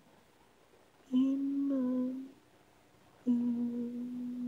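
A solo voice humming a melody with no accompaniment. About a second in there is a short held note, then a pause, then a long steady note that starts past the middle and carries on.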